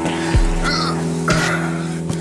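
Background music: sustained chords over a drum beat, with two heavy hits about a second apart.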